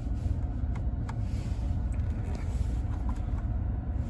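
Steady low rumble of a pickup truck's engine idling, heard inside the cab with the climate fan running. A few faint clicks come from the climate-control temperature knob being turned.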